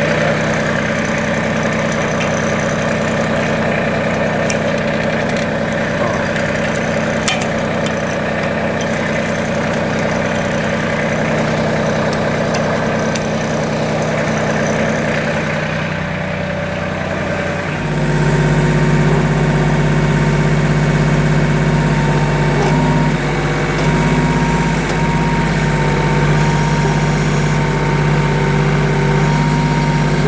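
Compact LS MT2-series tractor's diesel engine running at idle. About 18 seconds in, the engine note changes and gets slightly louder, with a thin steady whine added on top.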